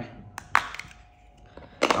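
Plastic cover of a small A7 GPS tracker being snapped open: two sharp clicks about half a second in, the second louder, followed by a few faint handling ticks.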